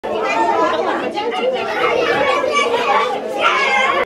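A group of children chattering and talking over one another, a steady hubbub of many voices at once.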